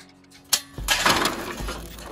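Burning charcoal poured from a chimney starter into the grill's coal pan, the coals clattering and crackling in a rush that is loudest about a second in and then trails off. A sharp click comes just before the pour.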